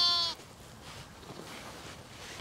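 A sheep bleating once, a wavering call that ends about a third of a second in, followed by only faint outdoor background.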